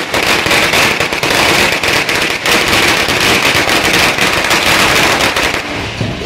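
A long string of red firecrackers going off in a continuous, rapid run of sharp bangs, dying away near the end.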